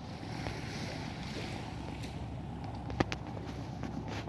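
Steady outdoor seaside background: wind on the microphone with a low rumble, and one sharp click about three seconds in.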